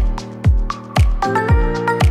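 Background music with a steady beat: a deep kick drum about twice a second under sustained chords and melody notes.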